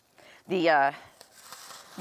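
Faint rustling of tulle netting being pulled through holes in a paper plate, through the second half.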